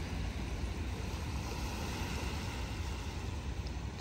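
Small sea waves washing over a rocky low-tide reef flat, a steady even hiss, with wind rumbling low on the microphone.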